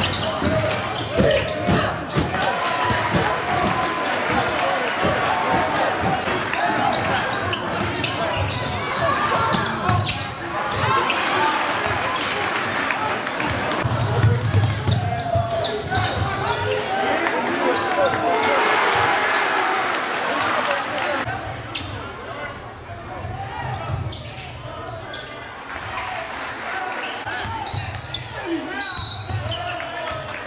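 Game sound in a gymnasium during a basketball game: a basketball dribbled and bouncing on the hardwood court, with crowd voices and chatter throughout.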